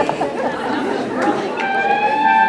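Many people chatting at once in a large, echoing hall. Near the end, music starts up with held notes.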